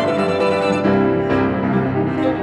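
Piano trio (violin, cello and piano) playing classical chamber music, the bowed strings holding notes that shift to new pitches a couple of times within two seconds.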